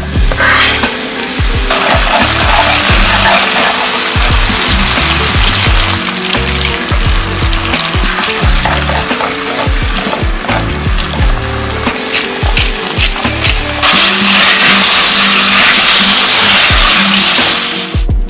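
Garlic and green onion frying in olive oil in a pan: a loud, steady sizzle, with spaghetti being tossed through it. The sizzle grows louder and steadier for a few seconds near the end. Background music plays underneath.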